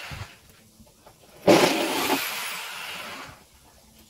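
Corded electric drill run in one burst of about two seconds, starting about one and a half seconds in, then stopping. A brief short noise comes right at the start.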